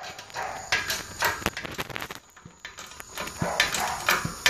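Irregular clicks, knocks and scrapes of metal parts being handled: a differential carrier with its tapered roller bearing.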